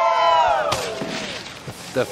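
Several voices cheering in a drawn-out excited whoop that fades out after about a second, with a sharp knock partway through.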